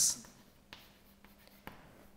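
Chalk writing on a blackboard: faint scratching, with two sharp taps about a second apart.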